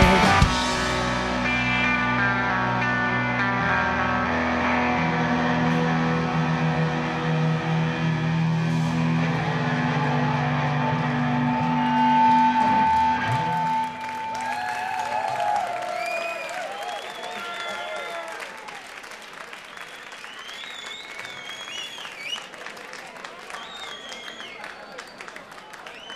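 A live rock band lets its closing chord ring, with electric guitar notes held and sustained; the held chord stops about 14 seconds in. A quieter stretch of wavering, gliding high tones and faint audience noise follows.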